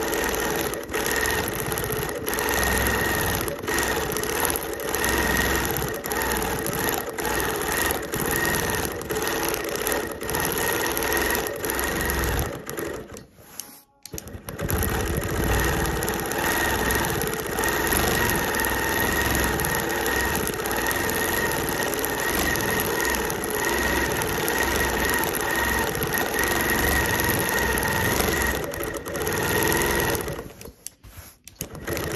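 Longarm quilting machine stitching steadily through the quilt layers. It stops briefly about halfway through, then runs on.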